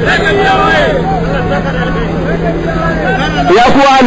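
Speech: a man preaching, over a steady low hum, growing louder near the end.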